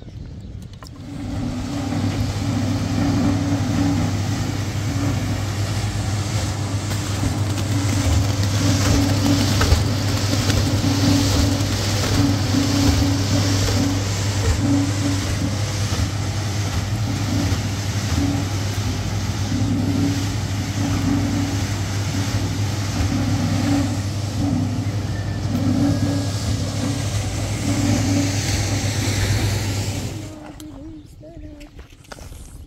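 Small drum concrete mixer running: a steady, loud motor hum with a repeating churning pulse as the drum turns. It starts about a second in and cuts off suddenly at the end.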